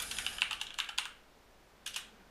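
Computer keyboard typing: a quick run of keystrokes for about a second, then a pause, with a couple more keystrokes near the end.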